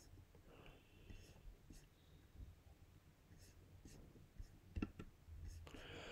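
Near silence: room tone with a few faint clicks, a couple of them sharper near the end.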